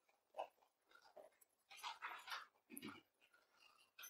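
Near silence: room tone with a few faint, brief sounds about half a second in and again around two to three seconds in.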